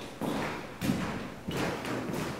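Footsteps on a wooden floor in a large, echoing hall: about three even steps, roughly two every second.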